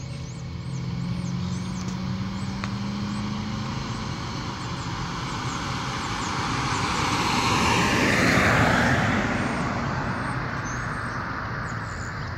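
A car passing on the road beside the track: its tyre and engine noise swells to its loudest about eight seconds in, with a falling pitch as it goes by, then fades, over a steady low rumble.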